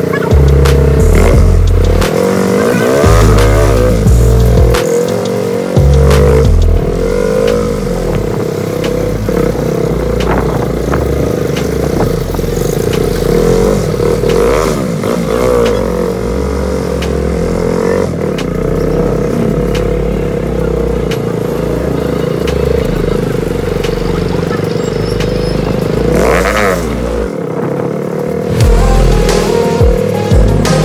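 A music track with a stepping bass line over a motorcycle engine running in traffic, its pitch rising and falling several times as the throttle is opened and eased off.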